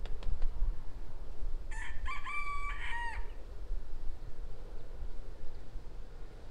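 A rooster crowing once, about two seconds in: a single cock-a-doodle-doo of about a second and a half, ending in a falling note. It sits over a low rumble of wind.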